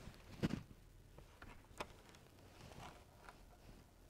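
A few soft knocks and clicks of handling while a welder gets into position: a low thump about half a second in and a sharp click near the middle, with no welding arc running.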